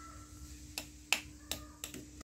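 Four sharp, short plastic clicks about a third of a second apart, from dolls being handled against a plastic toy dollhouse, over a faint steady hum.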